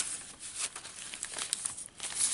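Pages of a handmade paper junk journal rustling and crinkling as they are handled and turned over.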